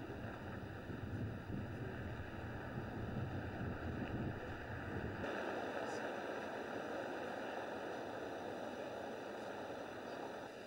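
Outdoor ambient noise: a low, gusty rumble like wind on the microphone over a steady hiss. About five seconds in, the rumble cuts off suddenly and a brighter, even hiss carries on.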